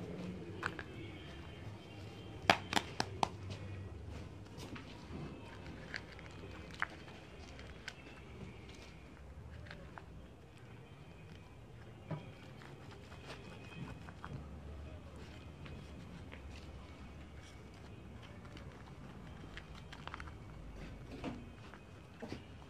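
Dry corn husks and a plastic sheet rustling faintly as tamales are wrapped by hand, with a quick run of four sharp clicks about two and a half seconds in and a few single taps later on.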